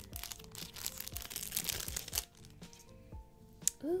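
Thin plastic packaging bag crinkling as it is handled and opened, with soft background music under it. The crinkling stops about halfway, leaving the music and one sharp click near the end.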